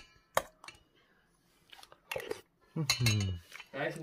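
Metal spoon clinking against a stainless steel bowl, with a couple of sharp clinks in the first second and a few faint ones later.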